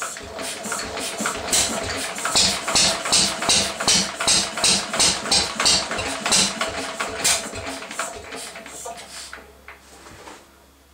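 1937 Lister D single-cylinder stationary engine firing in sharp, regular beats of about two to three a second, fading and slowing over the last couple of seconds as it runs down. It is running poorly and backfiring after standing unused for many years, and the owner wonders whether the timing is off.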